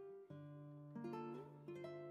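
Quiet background instrumental music, with a few held notes changing from one to the next.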